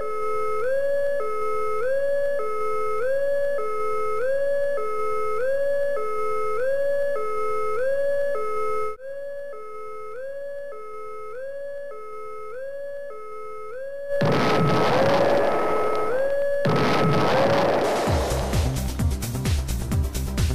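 Offshore platform PAPA (prepare to abandon platform) alarm from the emergency simulator: a loud repeating tone that swoops up and holds, cycling about three times every two seconds, which drops in level about halfway through. A loud rushing noise comes in over it in the last third, and near the end background music with a steady beat begins.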